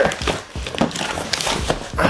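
Cardboard shipping box being ripped open by hand: a quick run of irregular tearing and crackling noises.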